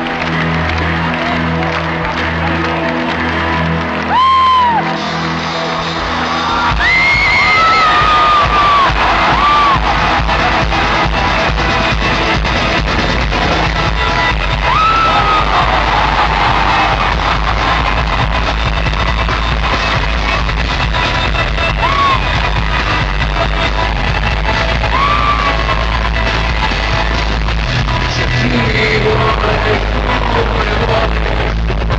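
Live rock concert heard from among an arena audience: a held, steady musical intro gives way about seven seconds in to a louder, fuller sound as the crowd cheers. Repeated whoops and yells rise above it.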